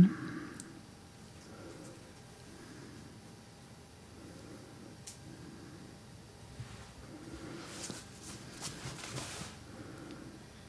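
Quiet room tone, then a run of soft, scratchy paintbrush strokes on a canvas board about eight seconds in, as paint is dabbed on.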